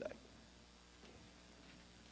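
Near silence: quiet room tone with a faint steady hum.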